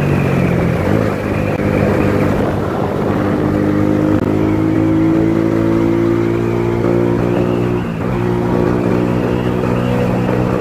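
Small single-cylinder 70cc motorcycle engine running steadily while riding, heard from the rider's seat; the engine note rises slightly about three seconds in and dips briefly about eight seconds in.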